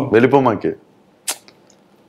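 A man's voice speaking for under a second, then a pause with one brief sharp click-like noise just past a second in.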